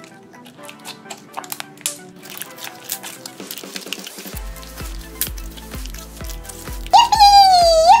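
Sticky homemade slime being squished and stretched in the hands, making small wet clicks and pops, under quiet background music. About four seconds in, the music picks up a bass beat. Near the end a loud, very high-pitched voice starts.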